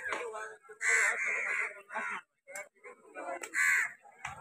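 Two loud, harsh bird calls, one about a second in and a shorter one near the end, with scattered voices in between.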